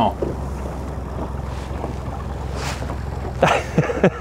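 Boat's outboard motor running at low trolling speed, a steady low hum, with wind on the microphone and water noise over it.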